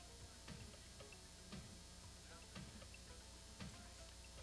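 Near silence, with faint, evenly spaced ticks about twice a second.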